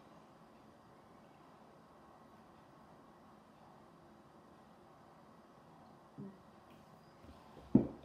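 Quiet room tone, with a short faint sound about six seconds in and one sharp knock just before the end.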